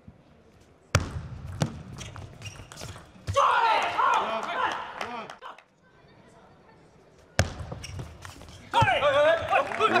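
Table tennis ball clicking off rackets and the table in a fast rally, a first burst of hits about a second in and a second burst a little after seven seconds. A voice calls out between the two bursts, and again near the end.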